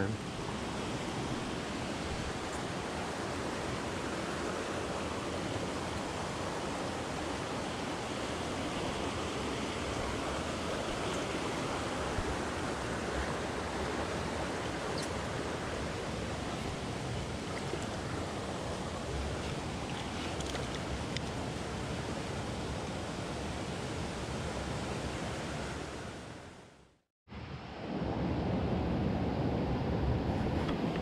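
Small mountain stream running over rocks, a steady rush of water. It fades out to silence briefly near the end and comes back.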